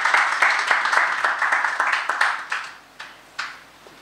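Applause from a small seated audience welcoming the next speaker, the clapping dying away about two and a half seconds in, followed by a single knock.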